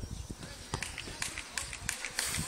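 Footsteps on a clay court, short knocks at about four a second.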